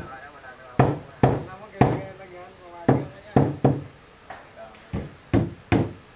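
Hammer blows on wooden formwork boards: about nine sharp strikes in uneven groups of two or three, each with a short ring after it.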